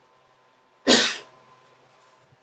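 A single short cough about a second in, loud against an otherwise near-silent line.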